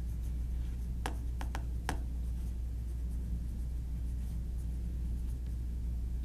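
Pen writing on paper at a table, with a few sharp clicks about a second in, over a steady low room hum.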